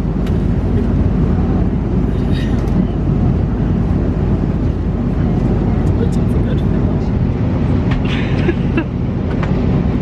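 Steady low drone of an airliner cabin in flight, the engine and airflow noise running evenly throughout.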